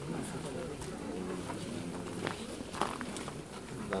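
Indistinct talk from people standing close by, with a few short clicks in the second half.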